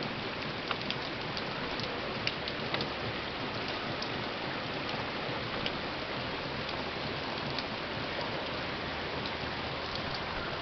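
Heavy rain falling steadily on a concrete patio and soaked lawn: a dense, even hiss with scattered sharper drop ticks.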